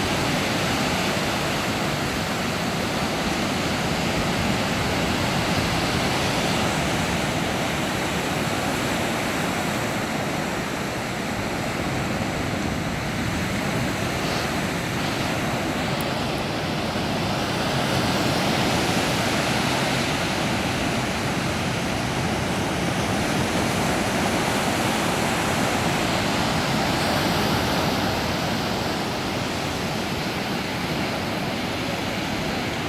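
Sea surf breaking on a beach: a steady wash of breaking waves that swells and eases every several seconds.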